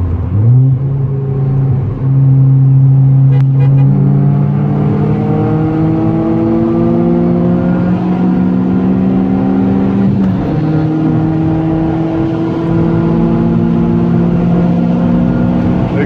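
Car engine accelerating hard, heard from inside the cabin over wind and road noise: its pitch climbs slowly and steadily, with a brief drop about ten seconds in where it shifts up a gear.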